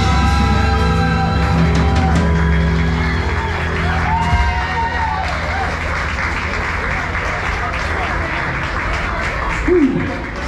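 A live band with fiddle, electric guitar, bass and drums plays the closing notes of a song, which stops about four seconds in. Applause and crowd voices follow in the bar.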